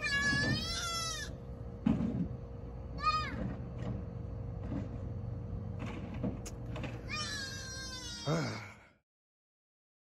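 An animal's high-pitched, drawn-out calls, wavering in pitch, three times, over a steady low hum; the sound cuts off about nine seconds in.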